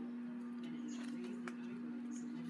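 A steady low hum with a couple of faint clicks, about a second and a second and a half in.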